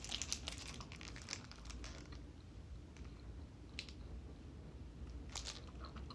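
A person biting into and chewing a Picky Bars blueberry energy bar: soft, close mouth clicks, dense in the first couple of seconds and sparser after, with a few sharper clicks near the end.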